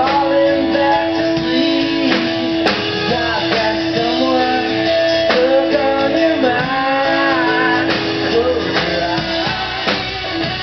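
Live rock band playing a song: strummed guitar, bass guitar and drums, heard loud from among the audience.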